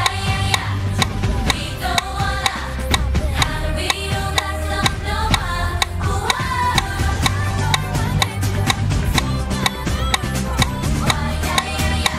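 K-pop girl-group song in an in-ear monitor mix: women's voices singing over the instrumental track with heavy bass, and a steady metronome click running underneath.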